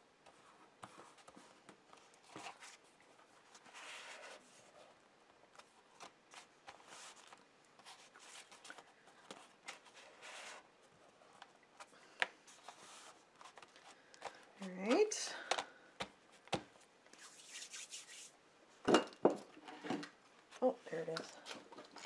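Paper and card being handled on a tabletop: soft rustles and rubbing as sheets are pressed flat, folded and slid about, with a few light taps. A voice murmurs near the end.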